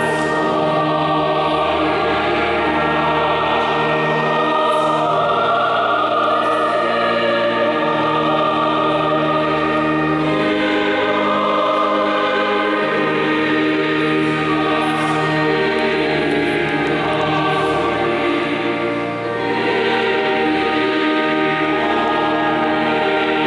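Church choir singing in several parts, holding long sustained chords.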